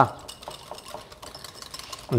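Wire whisk beating a creamy dressing in a glass bowl: a quiet, quick run of light clicks as the wires tap and scrape the glass.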